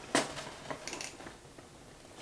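A short sniff of a paper perfume tester strip held at the nose just after the start, then a few faint small clicks and rustles of handling.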